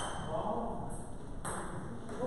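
A single sharp tap of a table tennis ball bouncing, about one and a half seconds in, with faint voices in the background.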